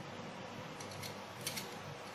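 Small kitchen knife scraping and clicking faintly against a jackfruit seed held in the hand as its skin is peeled off, a few light ticks over a faint steady hum.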